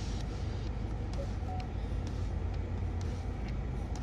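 Steady low rumble of a car at rest, heard from inside its cabin.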